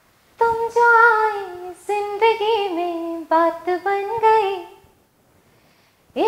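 A woman singing unaccompanied: one voice holding long notes with ornamented turns in a slow melodic phrase that ends about a second before the end.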